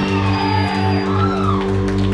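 Live rock band's electric guitars sustaining a ringing chord over a low bass note that pulses about three to four times a second.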